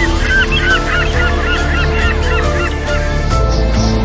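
A flock of birds calling, a quick run of many short overlapping honk-like calls that stops about three seconds in, over piano and orchestra music.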